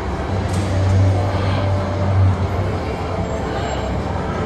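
A steady low rumble under an even haze of background noise, with no distinct events.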